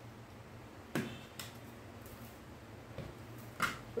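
A few faint light clicks and taps from a rotary cutter and acrylic ruler being handled on a cutting mat: one about a second in and a sharper one near the end, over a faint steady low hum.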